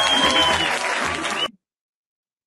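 Theatre audience applauding, a dense wash of clapping that cuts off abruptly about one and a half seconds in, followed by dead silence.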